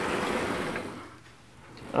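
Chalk scratching on a blackboard as a stroke is written, a soft scratchy noise in the first second that fades away.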